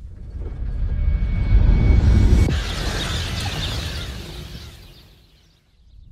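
Film sound effect of a distant comet-fragment impact: a deep rumble swells to a peak about two seconds in, a sudden rushing hiss comes in over it about halfway through, and both fade away before the end.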